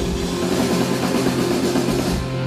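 Live hard rock band playing, drums with sustained guitar and bass notes.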